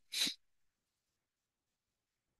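A man's single short, breathy exhale, about a quarter second long, right at the start.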